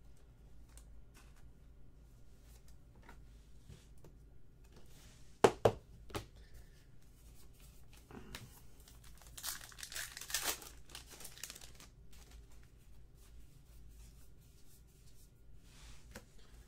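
Plastic-foil wrapper of a baseball card pack being torn open and crinkled for about a second and a half near the middle. Earlier there are two or three sharp clicks from cards being handled, the loudest sounds; the rest is soft card handling.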